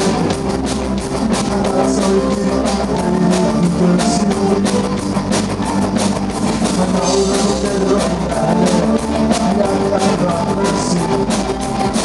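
Live rock band playing: electric guitars, keyboards and a drum kit keeping a steady beat.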